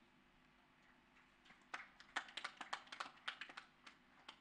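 Near silence at first, then, from about a second and a half in, a quick, irregular run of faint clicks and taps, several a second.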